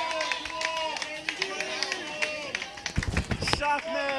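Club audience cheering and shouting, several voices at once, with scattered clapping. A few low thumps come near the end.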